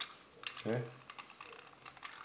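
Light, irregular plastic clicks and taps from a Ferrorama toy train box car being handled and turned over in the fingers.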